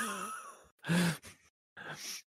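A man's laugh trailing off, then a short sigh-like vocal sound about a second in, and a faint breath near the end.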